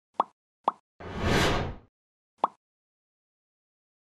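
Logo-sting sound effects: two quick pops half a second apart, then a whoosh lasting under a second, then one more pop.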